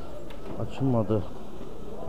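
A man's voice in one short utterance of under a second, about halfway through, over a steady low background hum of a busy market.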